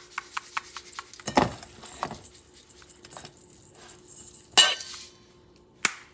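Rapid light clicks as salt is added over cube steak in a stainless steel bowl, followed by a few louder knocks and clinks of kitchen containers and the bowl, the loudest about four and a half seconds in.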